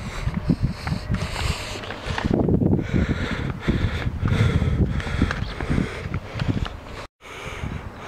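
Handheld camera microphone carried outdoors while walking: loud, uneven rumbling and thumping from wind and handling. The sound drops out abruptly for a moment about seven seconds in.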